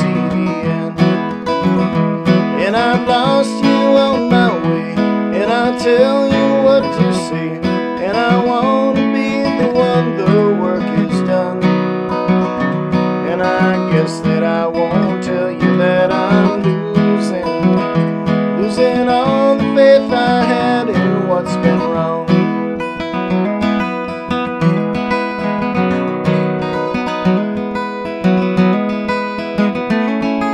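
Acoustic guitar played steadily, with a man's voice singing a folk song over it.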